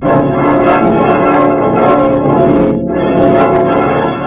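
Music distorted by stacked audio effects: a dense, loud clash of many sustained pitched tones that starts suddenly, briefly thins near three seconds in, and then holds.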